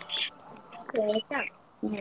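Soft speech over a video call: a few short, quiet words, with the clearest about a second in.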